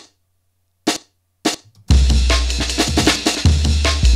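Drum-and-bass breakbeat fill made from chopped drum hits: two lone hits in near silence, then about two seconds in the full break comes in with a deep bass underneath.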